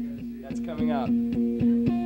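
Acoustic guitar played in a steady rhythm of about four to five strokes a second over a ringing chord, with a short gliding vocal sound about half a second in. The guitar's D string is missing, so the song is being played without it.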